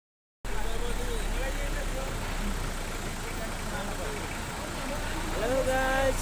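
Steady rush of a fast mountain river's whitewater running over rocks, the Lidder River, with faint voices over it and a clearer voice starting near the end.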